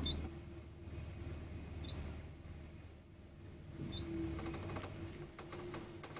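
Elevator car travelling between floors: a low, steady hum with a faint tone that comes and goes and a few small ticks, the hum fading near the end as the car reaches its floor.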